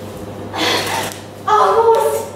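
A woman's breathy gasp about half a second in, then a short strained vocal sound near the end.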